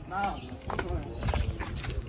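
Footsteps in slide sandals slapping on an asphalt driveway, a few steps roughly half a second apart.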